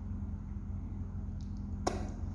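A steady low electrical hum with one sharp click near the end.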